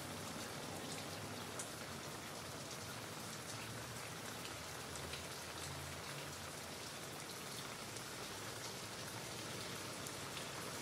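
Steady rain-like patter: a soft, even hiss with scattered faint ticks.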